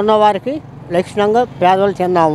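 A man speaking close to a microphone, in short phrases with brief gaps, over steady road-traffic noise.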